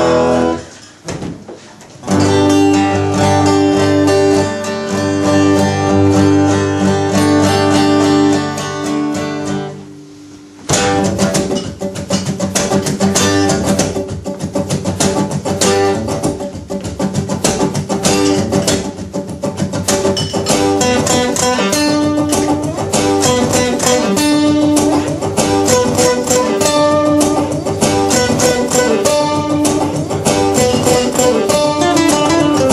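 Acoustic guitar starting a song: after a brief pause, chords are left to ring for about eight seconds, then a short break and a run of quick picked notes.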